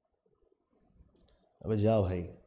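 Mostly quiet with a few faint clicks, then about one and a half seconds in a man's voice makes a short, drawn-out sound without words.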